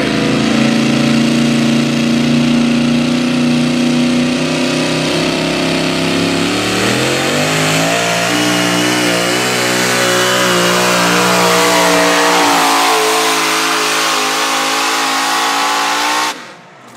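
Pro Mod pulling tractor's V8 engine running hard and held steady while hooked to the sled. About six seconds in the revs climb sharply, then waver up and down under load as it drags the weight-transfer sled down the track.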